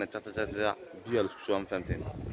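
A man's voice speaking close to the microphone.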